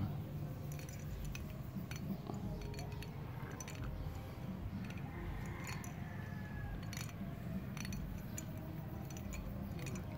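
Scattered light clinks and taps as a metal watch with a titanium band knocks against the inside of a glass mug while it is held under water, over a steady low rumble.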